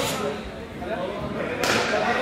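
Players' voices echoing in a large indoor sports hall, with a sharp knock about one and a half seconds in that rings on in the hall.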